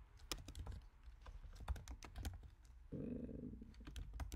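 Typing on a computer keyboard: a quick, uneven run of key clicks, with a brief break about three seconds in.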